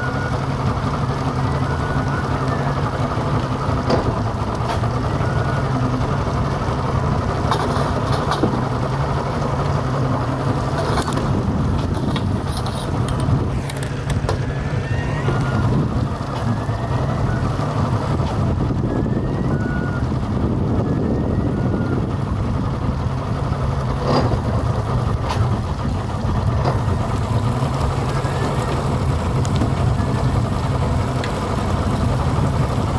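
Boat engine running steadily at low speed, a constant low hum.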